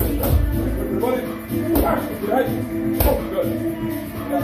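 Music playing, with three sharp smacks of boxing gloves hitting focus mitts at uneven spacing.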